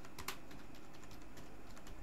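Computer keyboard being typed on: irregular keystroke clicks, with a quick cluster of strokes about a quarter second in and sparser ones after.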